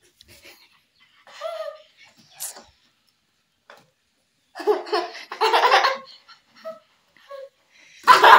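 Children laughing in short bursts, the loudest and longest about five seconds in.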